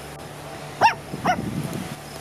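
Small dog giving two short, high yips a little under a second in, the first louder than the second.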